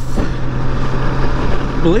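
Wind and road rush on the rider's microphone as a Honda Gold Wing GL1800 trike cruises at highway speed, with a steady low drone beneath it.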